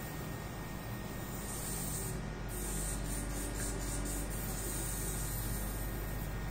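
Steady hiss over a low hum, with a brighter high-pitched hiss that comes in about a second and a half in and stops at the end. A faint steady tone sounds in the middle for just over a second.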